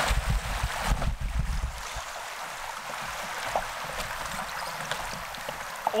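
Rushing, splashing water of a river riffle as a kayak runs through it, with heavy low thumps for the first two seconds; the rush then settles to a steadier, quieter wash as the kayak reaches calmer water.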